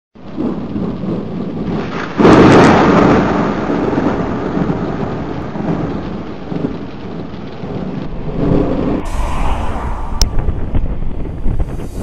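Thunder over steady rain. A loud clap comes about two seconds in and rolls away over several seconds.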